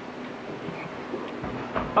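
Steady background noise picked up by the lectern microphones, with a faint steady hum and a soft low bump shortly before the end.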